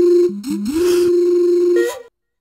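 A steady, nearly pure electronic tone, like a sine wave, held on one pitch. About a third of a second in it drops briefly to a lower note, glides back up to the first pitch and holds. Near the end it steps up slightly and cuts off suddenly.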